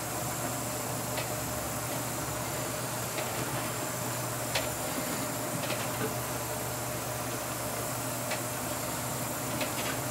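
Steady drone and hum of a pilot boat's engines heard inside the wheelhouse, with a few scattered light ticks.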